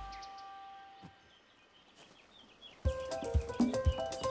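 Storybook background music: a held chord fades away over the first second, faint bird chirps sound during a short lull, and a new tune of short, rhythmic, percussive notes starts about three seconds in.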